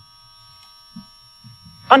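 Pause in a talk: faint room tone carrying a steady electrical whine of several thin, unchanging tones, with a small blip about a second in. A woman's voice resumes near the end.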